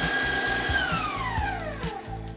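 KitchenAid Professional HD stand mixer creaming butter and sugar, its motor running with a steady whine. Under a second in, it is switched off and the whine slides steadily down in pitch as the motor spins down.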